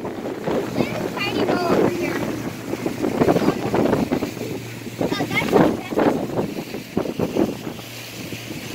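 Wind buffeting the microphone aboard a small open passenger boat under way, over the low steady hum of its motor. Snatches of voices come through about a second in and again around five seconds in.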